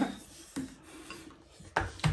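People eating noodles at a table: quiet scraping and rubbing of forks and bowls, with a light click about half a second in and a short, sharp noisy sound near the end.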